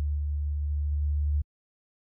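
Deep 808-style sub-bass note from FL Studio's 3x Osc synth built on sine oscillators, held steady and cutting off suddenly about one and a half seconds in.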